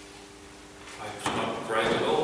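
A man speaking into a microphone in a hall: a short pause, then his talk resumes about a second in.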